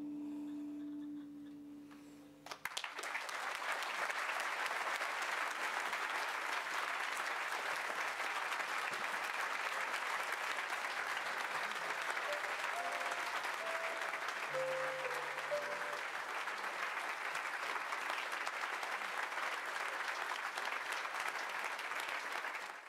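Held music notes fading out over the first couple of seconds, then a large audience breaks into steady applause about three seconds in and keeps clapping.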